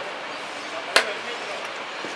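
A single sharp click of hard game pieces at a blitz chess board, about a second in, over low steady background noise.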